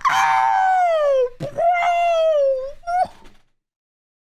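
A high-pitched voice wailing: one long cry that falls in pitch, then a second held cry and a short third one, after which the sound cuts off suddenly.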